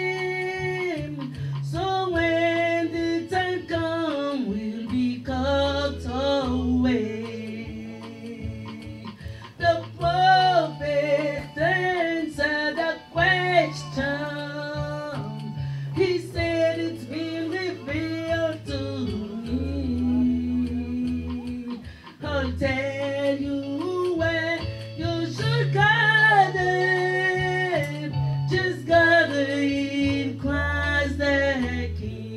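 A woman singing a church song into a microphone, with long held notes, over instrumental accompaniment whose low bass notes change every couple of seconds.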